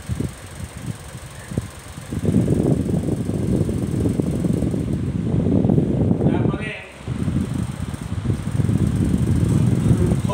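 Low, uneven rumble of air buffeting the microphone, starting about two seconds in and briefly dropping away near the seven-second mark.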